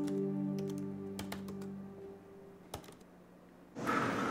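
Typing on a laptop keyboard: a string of quick key clicks, then a couple more, over sustained background music that fades out after about two seconds. Just before the end a rush of noise cuts in suddenly.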